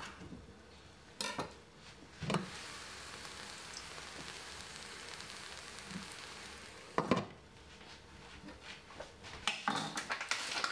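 A glass pot lid knocks against a steel saucepan as it is lifted, and the vegetables sizzle and steam with a steady hiss while the pan is uncovered. About seven seconds in the lid clanks back on and the hiss drops away, with a few lighter knocks near the end.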